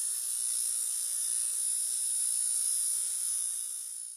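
Electronic intro sound effect under an animated logo: a steady, bright high-pitched hiss with a faint hum beneath. It fades slightly and then cuts off suddenly just after the logo appears.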